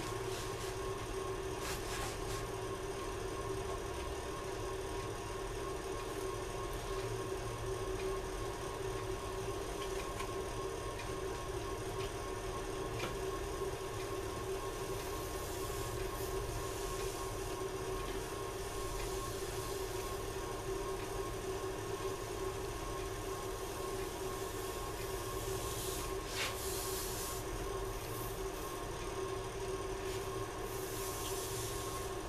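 Steady electric hum of a luthier's heated bending iron running while a thin, wet padauk veneer is pressed against it by hand, with a few faint handling ticks and a brief hiss near the end.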